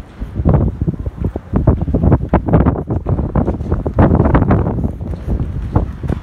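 Wind buffeting the microphone in loud, irregular gusts.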